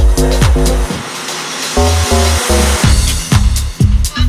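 House track with a four-on-the-floor kick drum at about two beats a second under chopped bass and chord stabs. About a second in, the kick and bass drop out briefly under a hissing noise sweep. The bass then comes back in, followed by the kick.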